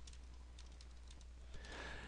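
Faint typing on a computer keyboard: a scattering of light key clicks over a low steady hum.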